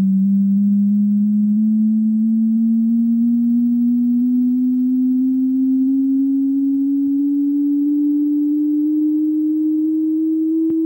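Computer-generated pure tone of the 'Riemann scale', a scale of notes whose frequencies are set by the Riemann zeta zeros, climbing slowly and steadily in pitch in small steps.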